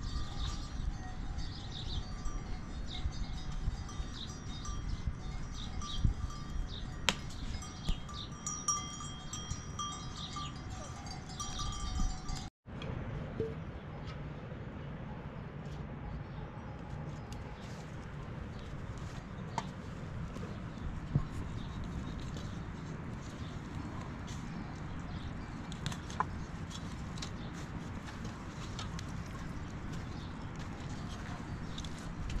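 Livestock bells ringing on and off over a steady outdoor hum for the first twelve seconds or so. The sound cuts out for an instant and is followed by quieter steady ambience with a few faint light knocks.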